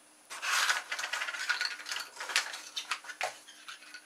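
Plastic milk bottle tops clicking and clattering against each other as they are scooped up by hand from a cardboard tray, in a run of small irregular clicks.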